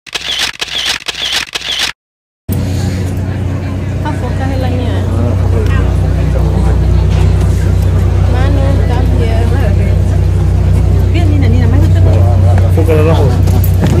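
A passenger ferry's engines running with a steady low hum, under people talking on deck.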